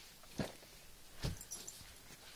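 Handling noise: two soft knocks about a second apart, the second followed by a few faint clicks.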